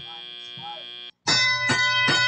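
Robotics-competition field signal for the start of the driver-controlled period: three quick ringing chime tones begin about a second in. Before them, the fading tail of the end-of-autonomous buzzer.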